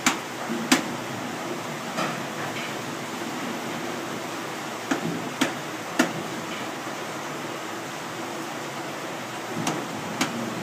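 Watermill shaft and wooden cog wheel turning slowly on a newly fitted gudgeon, over a steady rushing background. Sharp wooden knocks come at irregular intervals, about seven in all, the loudest less than a second in and a cluster around five to six seconds.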